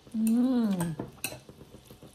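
A person's short wordless hum, under a second long, rising then falling in pitch. It is followed by a few light clicks of chopsticks against a ceramic bowl as noodles are tossed.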